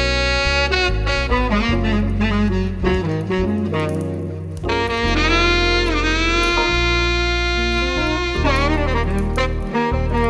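Smooth jazz: a saxophone plays a slow melody of long held notes that scoop and bend in pitch, over a steady bass line.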